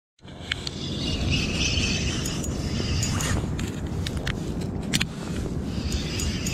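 Wind rumbling on the microphone, with scattered sharp clicks from handling a spinning rod and reel.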